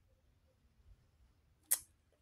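Near silence, then a single short, sharp click near the end as a hand sets a tarot card down on the spread of cards.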